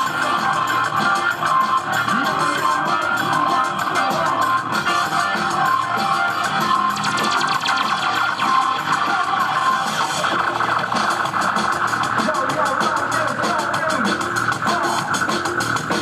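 Live band music played loud over a PA, with a plucked guitar-like sound over a fast, busy rhythm that runs without a break.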